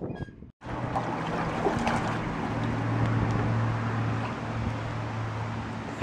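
A brief drop-out about half a second in, then a steady low hum under an even outdoor hiss.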